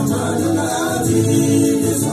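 Gospel song with several voices singing together in harmony, the notes held and gliding, over a steady musical backing.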